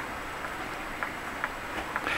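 Steady hiss of small USB fans running in a boat's cabin, with a few faint ticks.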